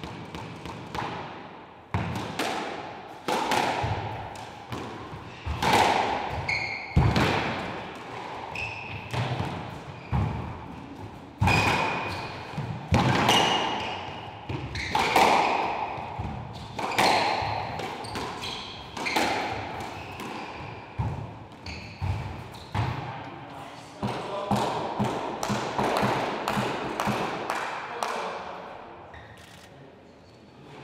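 Squash ball being struck in a rally, sharp echoing cracks off racket strings and court walls about every one to two seconds. Short squeaks of court shoes on the wooden floor come between the shots.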